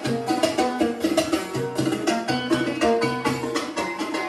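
Live Yemeni folk dance music in the Qabaytah tradition: a fast, steady hand-drum rhythm under a melodic line of held notes.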